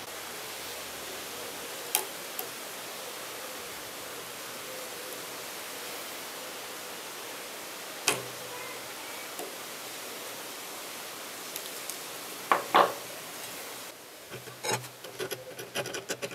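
Steady hiss with a few separate clicks and knocks as needle-nose pliers work at a sliver of metal at the end of a metal airsoft inner barrel. Near the end come rapid short scratching strokes of a file on the barrel's cut edge.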